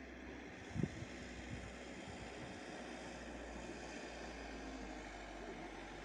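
Steady low rushing background noise, with one short low thump about a second in.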